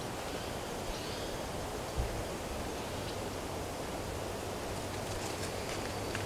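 Steady outdoor background hiss with no speech, and a single soft low thump about two seconds in.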